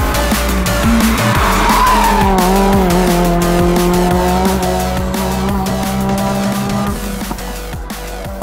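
A Renault Clio RS rally car's four-cylinder engine running hard as it passes close by, its note dropping in pitch about two seconds in and then holding steady, mixed with electronic music with a steady beat. The engine note fades out near the end.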